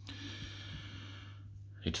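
A soft breath, heard as a hiss lasting about a second and a half, over a steady low hum; a man's voice starts near the end.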